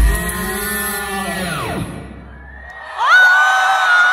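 The song's backing track ends: its last sound drops in pitch and dies away. After a short lull, about three seconds in, the crowd breaks into loud, high pitched screaming and cheering.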